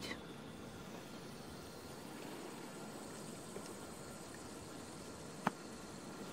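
Faint, steady outdoor background hiss in a garden, with a single sharp click about five and a half seconds in.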